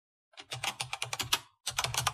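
Computer-keyboard typing sound effect: a quick run of key clicks, about eight a second, that breaks off for a moment about a second and a half in and then resumes.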